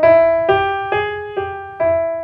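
Piano playing single notes one after another, about two a second, each ringing on under the next: the five-note pitch set A-flat, G, E, E-flat, C played close together in one register.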